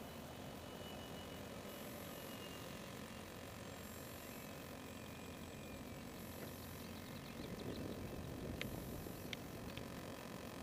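Faint, thin whine of a distant electric RC model warplane's motor, drifting slightly in pitch, over wind noise on the microphone that swells near the end. A couple of sharp clicks come just before the end.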